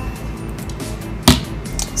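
Background music with a steady beat, and a single sharp knock a little past halfway through: a plastic condiment bottle handled on a tabletop.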